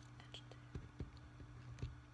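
Faint handwriting at a desk: light pen-on-paper ticks and three soft knocks of the hand or pen against the desk, over a steady low electrical hum.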